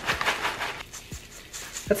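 Crushed Flamin' Hot Cheetos being shaken in a fine-mesh metal strainer: a dry, rattling sift, louder in the first second and quieter after.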